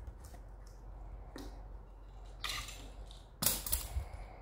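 Small plastic toy pieces being handled on a table: faint clicks and taps, then two short, louder rustles near the end.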